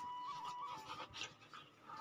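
Black Labrador panting softly, a few breaths, under quiet background music holding a steady high note.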